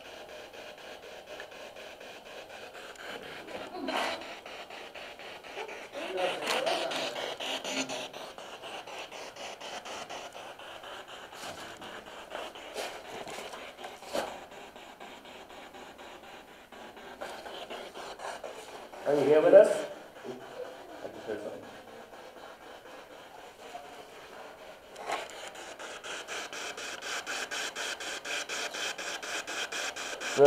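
Ghost-hunting spirit box, a portable radio rapidly sweeping the FM band, playing through a small external speaker: a steady hiss of static chopped by fast, even ticks as it steps from station to station. A few brief snatches of voice break through, the loudest about two-thirds of the way in.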